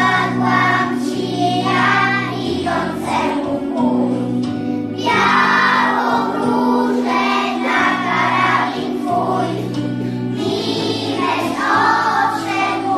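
A group of young children singing a Polish patriotic song in unison over an instrumental accompaniment with steady held low notes.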